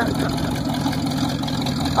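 Hot rod's V8 engine idling steadily, a low, even rumble.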